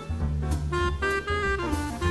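A jazz quartet playing a swing ballad: clarinet carrying the melody in held notes over piano, double bass and drum kit with regular cymbal strokes.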